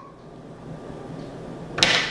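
Faint steady room tone, then near the end a single sharp slap as hands drop onto a wooden tabletop.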